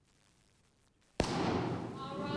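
One sharp bang about a second in, followed by about a second of rustling noise.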